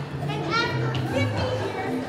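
A group of young voices shouting and whooping in celebration over music with a held, stepping bass line.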